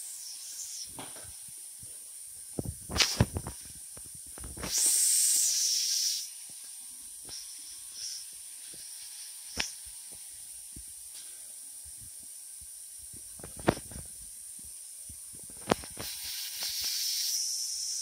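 Small sharp clicks from handling the piercing tools and jewelry, over a steady hiss. Two louder hissing bursts of about a second and a half each come about five seconds in and near the end.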